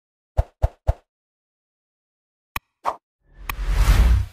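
Like-and-subscribe animation sound effects. Three quick pops come in the first second, then a sharp mouse click and another pop a little past halfway. Near the end a swelling whoosh with a deep rumble comes in, with mouse clicks over it.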